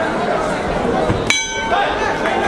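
A boxing ring bell struck once a little past halfway and left ringing, over crowd chatter in a hall.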